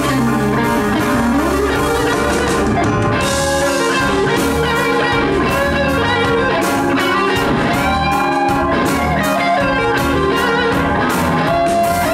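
Live blues band playing an instrumental passage: electric guitar leads with notes bent up and down, over bass guitar and a drum kit.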